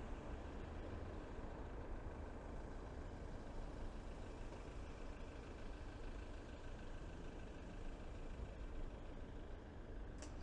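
Steady city road traffic: cars passing on a wide street, a continuous hum of engines with no single event standing out.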